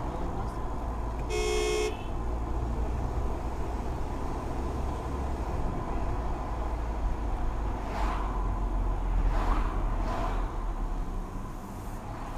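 Low, steady engine and road rumble inside a moving Mercedes-Benz car's cabin in city traffic, with a short car horn toot about a second and a half in.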